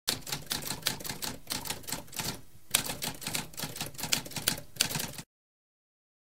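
Typewriter keys clacking in a rapid run of strokes, with a short break about two and a half seconds in and a louder stroke right after it; the typing stops abruptly a little after five seconds.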